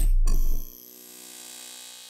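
Intro logo sting sound effect: a loud deep bass boom with a second hit about a quarter second in, cutting off just after half a second and leaving a quieter metallic ringing tail that fades out.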